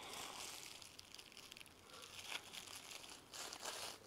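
Plastic bubble wrap crinkling faintly as it is pulled off a bar of soap, with louder rustles about two seconds in and again near the end.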